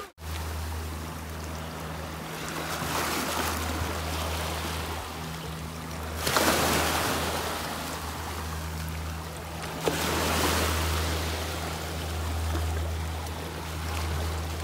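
Small waves washing in over shoreline rocks, swelling and receding several times, over a steady low hum.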